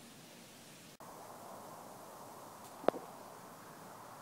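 Faint steady background hiss, cut off for a moment about a second in, with one short sharp click about three seconds in.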